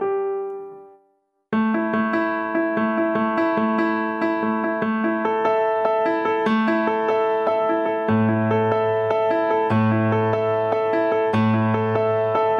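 Piano-voiced music played on a Korg Kronos keyboard workstation: a repeating figure of notes that fades out in the first second, a brief silent gap, then starts again abruptly; deeper bass notes join about eight seconds in.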